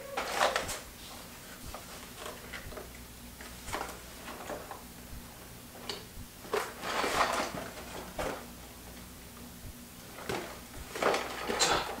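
A cardboard LEGO box handled and pried at by hand: irregular scrapes, rustles and taps of the cardboard in a few clusters, the flaps resisting being opened.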